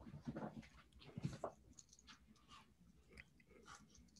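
Near silence with faint, scattered small clicks and rustles.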